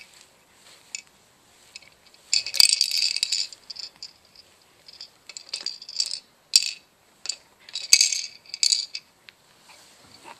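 Hanging plastic toys of a baby play gym, toy keys and linked rings, clattering and rattling together in irregular bursts as they are knocked about.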